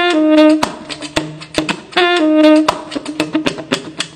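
Tenor saxophone played beatbox-style. A short note drops to a held lower note near the start, and the same figure comes again about two seconds in. Sharp percussive clicks from the horn keep a beat between the notes.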